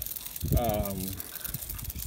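A man's voice making a brief drawn-out hesitation sound, over faint background noise with a few small clicks.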